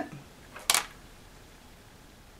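A single short, sharp click about two-thirds of a second in, over faint room tone.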